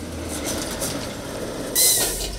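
Heavy military cargo truck driving over a dirt track: steady engine and road noise, with a brief loud burst carrying a short falling squeal near the end.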